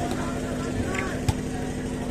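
Faint crowd murmur over a steady low hum, with one sharp slap a little past halfway through: a volleyball struck on the serve.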